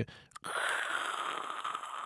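A man's long audible breath close to the microphone, lasting about a second and a half, with a short click just before it.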